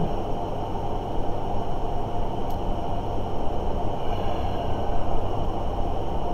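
Steady low rumbling background noise, with no speech over it; a faint tick about two and a half seconds in.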